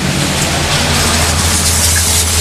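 A steady low rumble with an even hiss over it, growing a little louder about half a second in.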